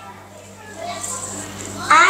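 Quiet child's speech, soft and broken, as a boy starts to read aloud, with louder reading beginning at the very end; a steady low hum runs underneath.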